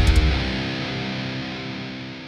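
Mithans Berlin electric guitar's last distorted chord ringing out and slowly fading away. The low end of the backing mix stops about half a second in, leaving the chord to decay on its own.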